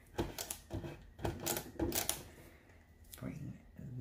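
Hands handling small paper embellishments on a scrapbook layout: a run of irregular clicks and taps in about the first two seconds, then quieter handling.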